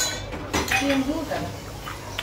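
A spoon or other cutlery clinking against a plate during eating: a sharp clink at the start and a few lighter knocks about half a second later, with voices talking softly in between.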